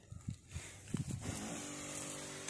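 Battery spray pump's twin electric motors running with a steady hum while the lance sprays, dropping away briefly at the start and returning about a second and a half in, with a few low knocks in between.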